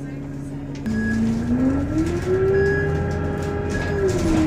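A city transit bus's engine and drivetrain idle steadily, then about a second in the bus pulls away. Its whine rises smoothly in pitch as it accelerates, and the sound grows louder.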